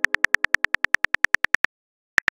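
Phone keyboard typing sound effect: a rapid, even run of short clicks, about ten a second, that stops about three-quarters of the way through as the message finishes typing out.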